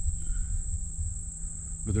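Insects trilling in one steady, high-pitched drone, over a low rumble. A man's voice comes in right at the end.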